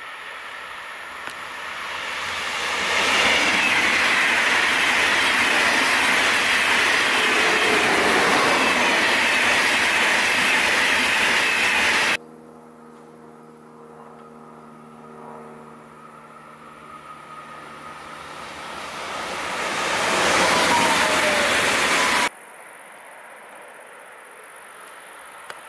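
Electric trains passing at speed on an overhead-wired main line. First an ICE high-speed train's steady rush of wheel and air noise builds and then cuts off abruptly about twelve seconds in. After a quieter stretch with a low steady hum, a second train approaches and passes with a falling pitch, and that sound also cuts off abruptly near the end.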